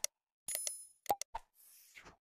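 Sound effects of a subscribe-button animation: a mouse click, a short bright ding about half a second in, two more clicks a little after a second, then a faint soft whoosh near the end.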